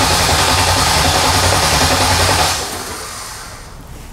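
Starter motor cranking the engine under load, a steady fast churning that fades away over the last second or so. The battery sags to about 11.1 volts while it cranks, and over 2 volts are lost through the wiring before reaching the starter.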